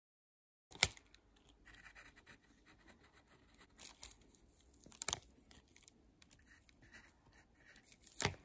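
Pencil going over lines on a sheet of paper: faint scratching and rustling of the paper. It starts abruptly under a second in, with sharp clicks about a second in and about five seconds in.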